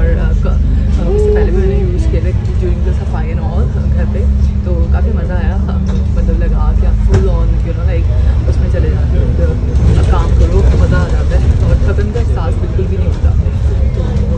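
Steady low engine and road rumble inside a moving bus, with a constant hum, under a woman talking.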